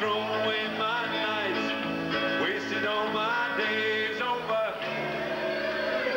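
A live rock-and-roll band playing a short passage of a song: electric guitar notes, some bending in pitch, over held bass-guitar notes.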